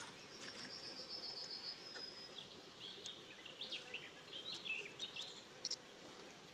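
A small bird singing: a fast trill of about ten even, high notes over the first two seconds, then a run of varied chirps, over a faint steady background hiss.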